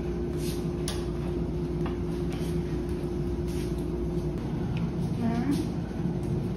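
Steady low hum with a faint held tone, broken by a few light clicks.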